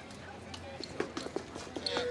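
Quiet outdoor background of a street crowd, with a run of light clicks and taps in the second half.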